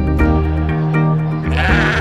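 Background music with held notes, and a White Dorper ewe bleating once near the end.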